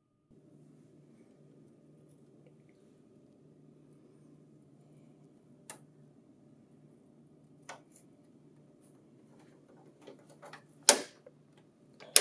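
Plastic roller cover being fitted onto a laser printer's paper-exit rollers: a few small, separate plastic clicks over a faint steady hum, then a quick run of clicks and one loud sharp snap near the end as it seats.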